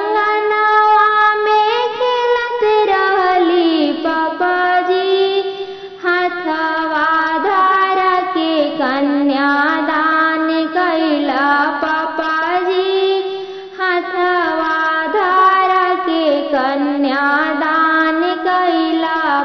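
A woman sings a Bhojpuri kanyadan wedding song (vivah geet) in long, drawn-out phrases, the notes gliding and bending, with short breaths between phrases about six and fourteen seconds in.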